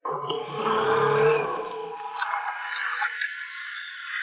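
A man's drawn-out cry of pain under dramatic music, loudest in the first second or two and then fading.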